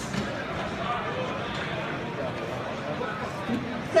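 Steady babble of many voices in a large indoor sports hall, with no one voice standing out.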